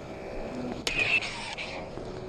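Combat lightsabers' sound boards humming steadily, with a sharp electronic clash effect just under a second in: a sudden crack followed by a bright crackling burst that lasts nearly a second.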